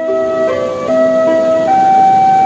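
Background music: a slow melody of long held notes that change pitch every half second or so.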